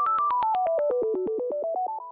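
Electronic intro jingle: a quick run of short synthesizer beeps, about ten a second, climbing and falling in pitch with an echo, fading out near the end.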